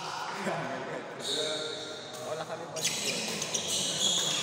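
Badminton rackets striking a shuttlecock a few times, sharp clicks in the second half as a rally gets going, over the chatter of spectators' voices.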